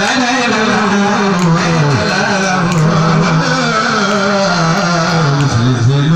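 A man chanting a khassaide, a Mouride devotional poem, into a handheld microphone, amplified, in long held notes that waver and glide down.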